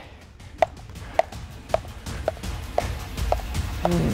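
Weighted jump rope slapping a concrete deck with each turn: a sharp click a little under twice a second, evenly spaced, over background music with a low bass.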